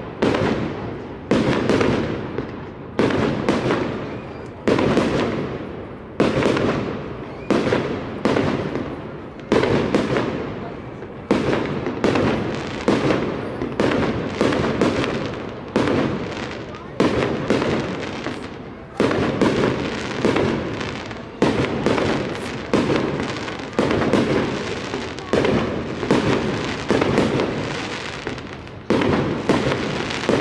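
Aerial fireworks shells bursting in steady succession, a sharp bang about every second or so, each trailing off in a long echo.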